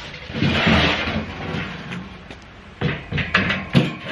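Metal loading ramps scraping and sliding against a pickup's tailgate, then a few sharp metal clanks near the end as they are set in place.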